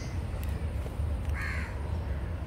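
A crow caws once, a short harsh call about one and a half seconds in, over a steady low rumble.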